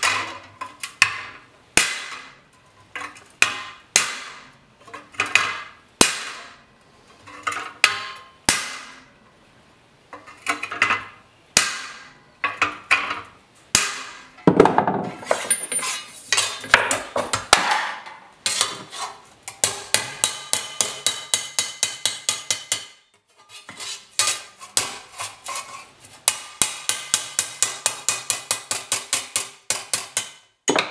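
A hand hammer striking sheet steel on an anvil, each blow ringing with a short metallic tail, forming a rounded corner in a patch panel. The blows are spaced out for the first several seconds, then come faster, in quick runs of several a second with a short pause about two-thirds of the way through.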